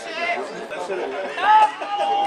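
Several people's voices calling out and chattering, with a loud, high held shout about one and a half seconds in.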